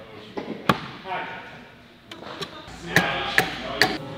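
A hatchet chopping into a cedar post: about five sharp wooden knocks at uneven intervals, two of them close together in the middle and two near the end.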